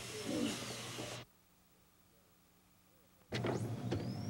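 Room noise with faint voices that cuts off abruptly about a second in, leaving about two seconds of near silence with only a faint steady hum, before room noise and a spoken "OK?" return near the end.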